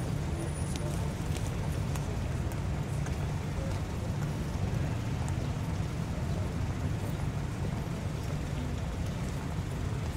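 Steady low background rumble with a few faint clicks.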